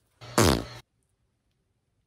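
A short fart noise with a low buzzing pitch, about half a second long.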